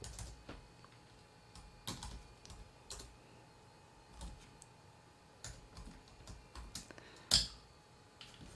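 Dell Inspiron 3800 laptop keyboard being typed on in separate, scattered keystrokes, with one louder key press near the end.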